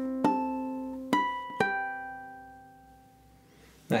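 Ukulele playing three plucked artificial harmonics in a long-short-long rhythm, the last one ringing out and fading away.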